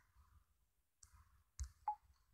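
Two sharp clicks close together near the end, over faint room tone, with a fainter click about a second in.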